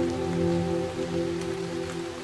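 A soft piano chord rings on and slowly fades over a steady patter of rain.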